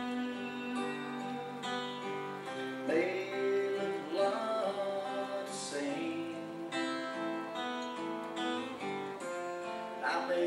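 Acoustic guitar strummed and picked in a slow song, with a man's voice singing along at times.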